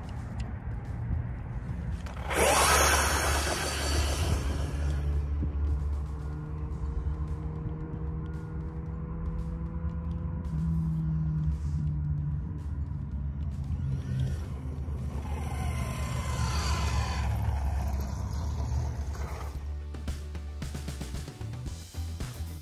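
Background music, with a Losi Super Rock Rey 2.0 RC truck's electric motor and tyres on grass surging past twice, about three seconds in and again around sixteen seconds, its pitch falling as it goes by.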